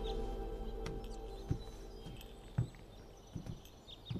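Background music fading away, then slow, spaced footsteps knocking on a hard floor, a few steps about a second apart.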